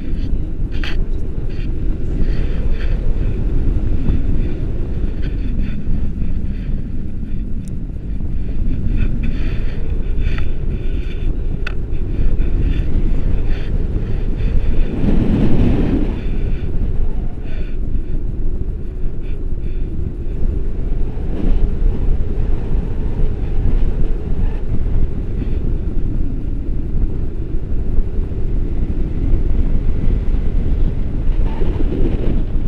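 Airflow buffeting a stick-mounted camera's microphone in paraglider flight: a steady, loud rumbling wind noise, with a stronger gust about halfway through.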